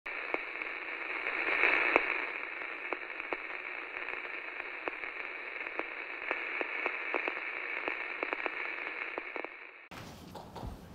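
Radio static sound effect: a steady hiss peppered with crackling clicks, swelling briefly about two seconds in and cutting off suddenly near the end.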